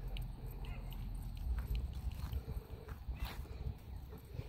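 Wind rumbling on the microphone, with scattered faint clicks and a louder knock about three seconds in.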